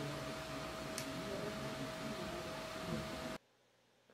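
Room tone in a procedure room: a steady hiss with a faint steady whine and one light click about a second in. The sound cuts out abruptly to silence shortly before the end.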